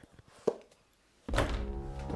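A single sharp thud about a quarter of the way in, then a dark, ominous film score cuts in suddenly near the end with a loud hit and low held notes.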